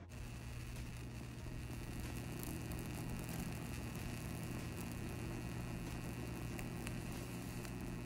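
Tesla candle's plasma flame running steadily: a low hum under a faint hiss and crackle.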